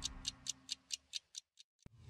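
Clock-like ticking sound effect in a TV programme's closing logo sting, about four to five ticks a second, fading away. A single short click comes near the end.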